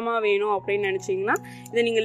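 A voice over background music with steady sustained tones.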